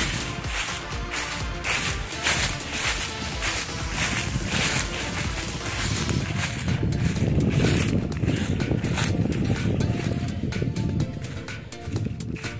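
Footsteps crunching through dry fallen leaves at a walking pace, about two steps a second. Wind rumbles on the microphone through the middle of the stretch, and music plays in the background.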